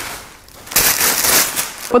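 Plastic packaging crinkling and rustling as it is handled and tossed aside, in two noisy spells, the louder one about a second in.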